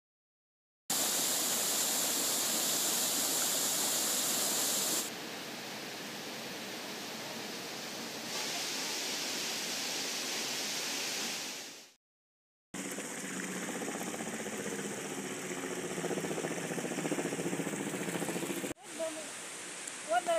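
Steady rushing of a waterfall and of a shallow river running over boulders, in short clips that change every few seconds, with a brief silent gap about twelve seconds in. Voices come in near the end.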